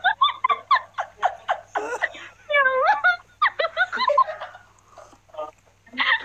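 People laughing hard in quick, repeated bursts, trailing off into a few quieter bursts near the end.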